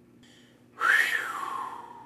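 A man's long whistled exhale, a 'whew' of relief. It starts suddenly about a second in, slides down in pitch and trails off.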